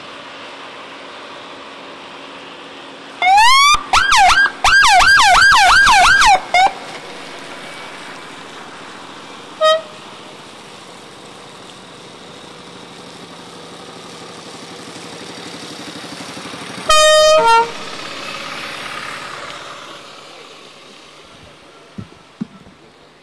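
Police escort siren sounding a rapid up-and-down yelp for about three seconds, then a short single chirp, and later a brief steady horn-like blast. Under it runs a steady hiss of traffic on a wet road that swells for a while near the end.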